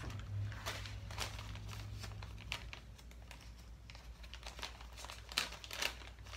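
Clear plastic bag of dried herb crinkling and crackling in irregular bursts as it is handled and opened.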